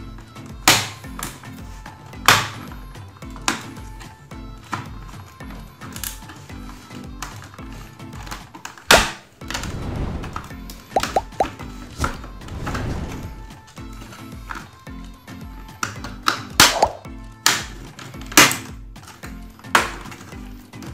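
Background music with a steady beat, over sharp plastic snaps and knocks as the snap-fit clips of a laptop's bottom cover are pried loose one after another.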